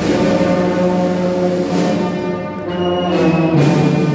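Brass band playing a slow funeral march (marcha fúnebre): held brass chords with deep low brass, shifting to a new chord near the end, and one percussion stroke about halfway through.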